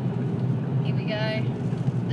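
Steady low road and engine rumble inside a moving car's cabin, with a short pitched voice sound a little over a second in.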